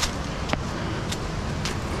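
Footsteps on a trail covered with dry leaves and rock, three steps about half a second apart, over the steady rushing of nearby river rapids.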